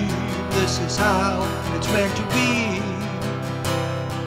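Solo acoustic guitar strummed in chords, with a man singing a held, wavering vocal line over it.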